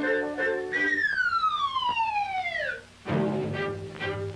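Cartoon music, then a long falling slide-whistle glide of about two seconds: the classic cartoon sound for a fall. It ends in a thump about three seconds in, and the music starts up again.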